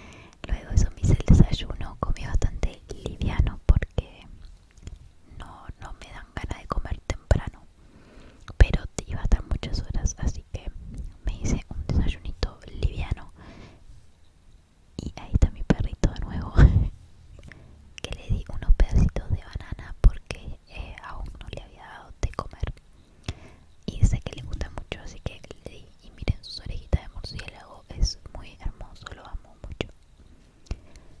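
A woman whispering in Spanish, in short phrases with pauses.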